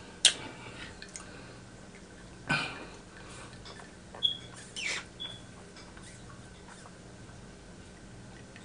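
Sipping a drink through a straw from a glass: quiet sucking and mouth sounds with two short high squeaks around the middle. A sharp click comes just after the start, and a louder swish about two and a half seconds in.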